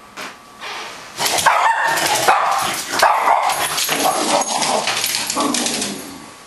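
A Cockapoo barking and yipping without a break, starting about a second in and dying down near the end.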